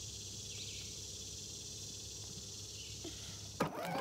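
Steady outdoor woodland ambience: a high, even hiss of summer insects over a low hum. A sudden louder noise breaks in just before the end.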